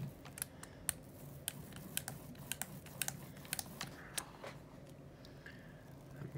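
Paint brayer rolling paint through a plastic stencil onto a gel printing plate: a run of irregular sharp clicks and ticks, several a second.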